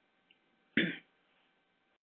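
A man clearing his throat once, briefly, just under a second in, in a pause in his talk.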